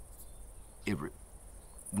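Insects chirping outdoors, a steady high-pitched buzz with a fine rapid pulse, during a pause in speech, with one short spoken word about a second in.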